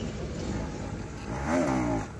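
A motor vehicle running with a steady low rumble. A short pitched sound that rises and falls comes in about a second and a half in.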